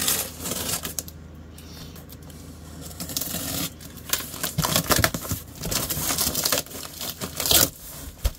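A taped cardboard shipping box being cut and pulled open: light handling at first, then from about halfway a run of scraping and tearing of tape and cardboard, with the crinkle of packing paper.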